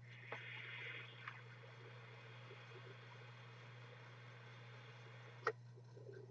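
Faint airy hiss for about a second as air is drawn through a Hekvapor Big Dripper RDTA atomizer during a vape drag, then near silence over a steady low hum, with one small click near the end.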